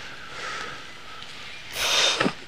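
A man breathes in softly through his nose, then gives one loud, sharp sniff near the end.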